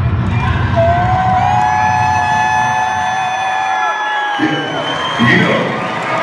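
Live hip-hop concert heard from the audience: a bass-heavy beat over the PA with one long held note for about three seconds. The bass then drops out and the crowd shouts and cheers near the end.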